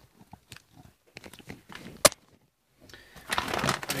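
Handling noises on a kitchen table: scattered light clicks and knocks, one sharp click about two seconds in, then a crinkly rustle near the end.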